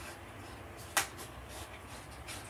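Handmade wire spiral coil being twisted through the punched holes of a paper notebook, with soft rustling and faint ticks of wire against paper. One sharp click comes about halfway through.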